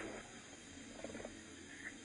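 A pause in a man's speech: the faint steady background hiss of the recording, with a brief faint voice sound about a second in.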